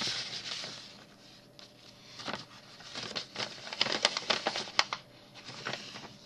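Paper rustling and crinkling as sheets of paper ephemera are handled and sorted. A longer rustle at the start, then a run of small crackles and ticks in the middle.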